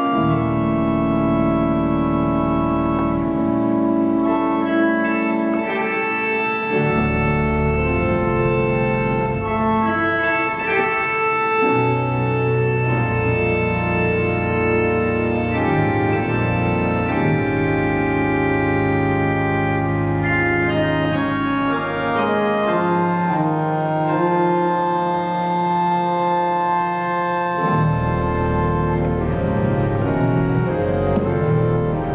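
Balbiani Vegezzi-Bossi pipe organ (1964) playing sustained chords that change every second or two. Deep pedal bass notes drop out for a few seconds at a time, about four seconds in, near ten seconds and near the end.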